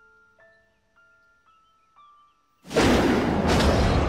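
Film soundtrack: a soft, slow glockenspiel-like melody of single bell notes, broken about two-thirds of the way in by a sudden, very loud noisy blast with a deep rumble that keeps going.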